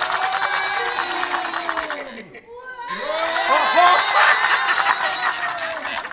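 Several voices cheering and whooping in two long swells of rising-then-falling pitch, the second with several wavering calls at once.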